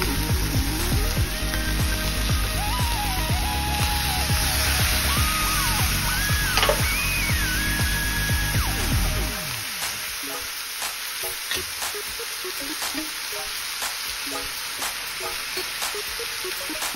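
A miso-marinated beef steak sizzling in a frying pan under aluminium foil as it steam-fries with sake, a steady fizz with scattered pops. Background music plays over the first nine seconds or so, then stops, leaving the sizzle alone.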